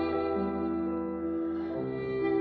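Cello and grand piano playing a slow, softer classical passage: one note is held through while lower notes change beneath it.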